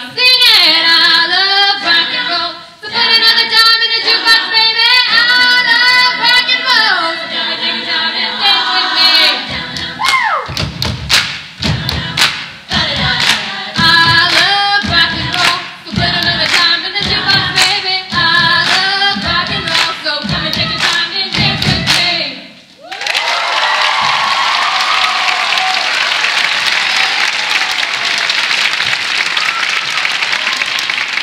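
Female a cappella group singing with several voice parts, joined about ten seconds in by a steady thumping beat. The song ends a little after twenty seconds in and the audience breaks into applause.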